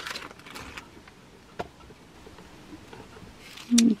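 Quiet room tone with a few faint clicks, one sharper click about one and a half seconds in; a voice starts just before the end.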